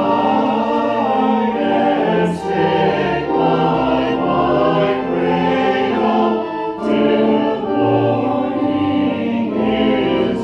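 Mixed church choir of men and women singing a hymn in parts, in sustained phrases that follow on one another without pause.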